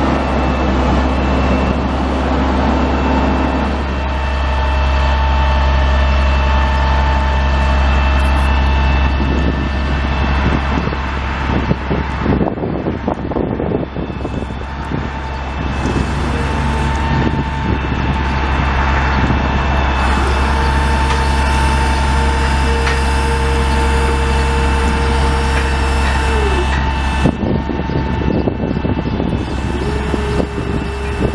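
Truck's Caterpillar 3126 inline-six turbo diesel running steadily, a heavy low drone with thin steady whines over it. The whines shift abruptly several times, and one near the end slides down in pitch.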